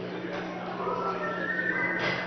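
Murmur of voices with a steady electrical hum. About a second in, a high, whinny-like cry rises in pitch and is held to the end.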